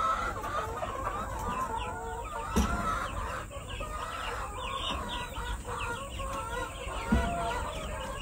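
A pen of young chicks peeping: many rapid, short, high falling chirps, with lower chicken calls mixed in. Two dull thumps, about two and a half and seven seconds in.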